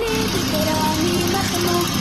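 An industrial sewing machine running steadily at speed as it stitches decorative braid onto fabric. Music with a melody of held notes stepping in pitch plays over it.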